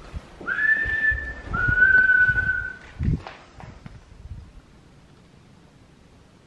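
A person whistling two steady notes, the second slightly lower and longer than the first, as a call for a reply to copy. A single thump follows at about three seconds.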